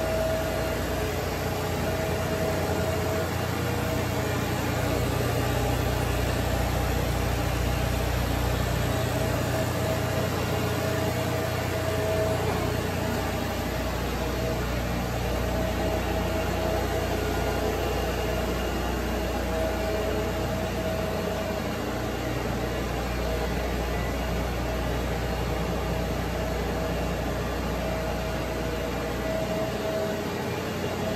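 Kellenberger Kel-Varia UR 175 x 1000 CNC universal cylindrical grinder running a multi-plunge grind cycle dry: a steady machine hum with a steady mid-pitched whine. Its coolant pump motor runs along with it, though there is no coolant in the machine.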